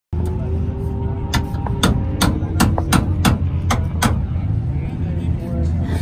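A hammer striking metal under a car, about eight quick, evenly spaced blows between about one and four seconds in, over a steady low hum. The hammering is bending the car's leaking gas tank so that it will seal.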